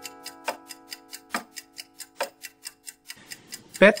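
Clock-like ticking in an intro soundtrack, even and fast at about five ticks a second, over sustained music tones that fade out about three seconds in. A man's voice starts near the end.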